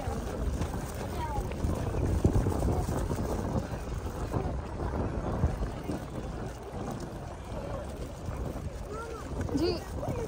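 Wind rumbling on the microphone over lake water splashing where fish are feeding at the surface, with people's voices in the background.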